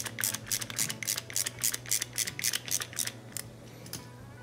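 A socket ratchet clicking rapidly, about five clicks a second, as it turns a 17 mm socket to pull a quick-connect fitting through a plastic bottle lid. The clicking stops about three seconds in.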